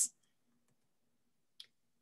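Near silence broken by a single faint click about one and a half seconds in: a computer mouse click advancing the presentation slide.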